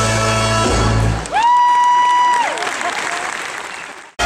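Live pit band ending a show number with a held chord, then a single high note that scoops up, holds about a second and falls off, over audience applause that fades out.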